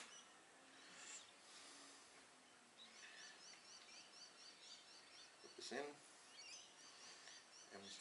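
Near silence, with a faint run of small high chirps repeating about four or five times a second, beginning about three seconds in and fading near the end, and a brief low murmur of a voice a little before six seconds.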